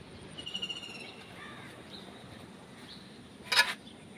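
Birds calling: a quick high-pitched trill about half a second in, then a few softer chirps. Near the end comes a short, loud, harsh sound.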